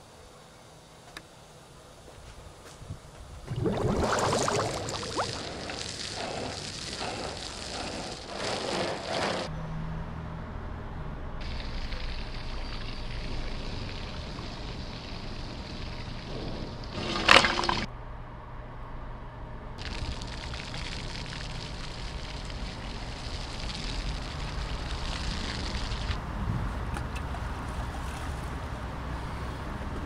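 Water from a garden hose running, first into a bucket of car-wash soap and then spraying onto the car, in several segments that start and stop abruptly. A brief sharp loud sound stands out a little past the middle.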